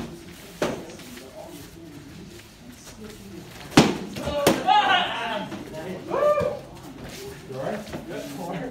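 Practice swords striking shields in sparring: a few sharp knocks, the loudest about four seconds in, followed by short shouts.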